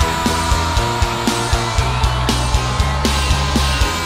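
Instrumental passage of a rock song: electric guitar over bass and drums, with a steady beat of about four kicks a second and no vocals.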